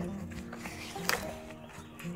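Soft background music with sustained held notes. About a second in, a short sharp crackle of paper as craft pieces are lifted out of a box packed with paper shreds.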